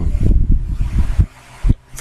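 Irregular low thuds and rustling of hands rubbing and clasping together close to the microphone, with one last thud near the end.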